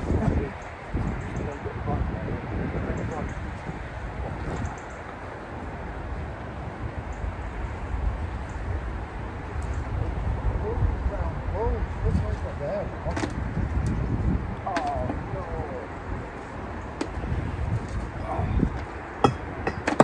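Steady low outdoor rumble, with brief faint voices in the middle and a few light clicks.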